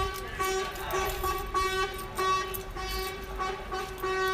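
Horn tooting in short repeated blasts of one steady pitch, roughly two a second, over the noise of a crowd.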